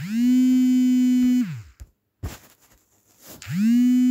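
Smartphone alerting to an incoming call: a low buzzing tone that slides up at the start, holds steady for about a second and a half, then slides down and stops. It starts again about three and a half seconds in.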